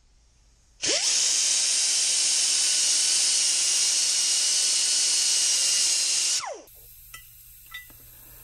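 A die grinder with a sanding brush spins up about a second in, runs at high speed with a steady high-pitched whine for about five and a half seconds while sanding the bore of a torque converter snout, then winds down.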